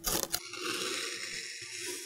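Knife strokes through kinetic sand, ending abruptly about half a second in. Then a steady grainy hiss as a metal ball-shaped scoop presses down into fine blue sand.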